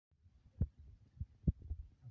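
A few soft low thumps, the two loudest about half a second and a second and a half in: handling noise as hands hold and shift a sealed syringe packet.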